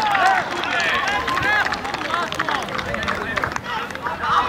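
Several voices shouting and calling over one another at once, the excited calls right after a goal.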